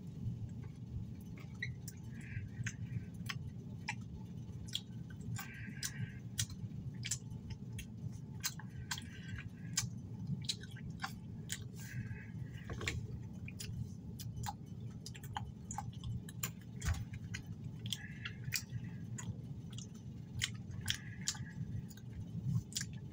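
A person chewing a mouthful of Skittles Littles, tiny chewy fruit candies, with many small irregular mouth clicks over a steady low hum.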